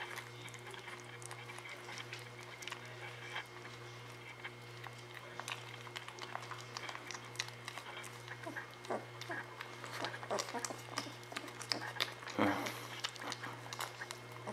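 Newborn Weimaraner puppies nursing: many small, irregular wet clicks and smacks of suckling, with one short puppy squeak or grunt near the end.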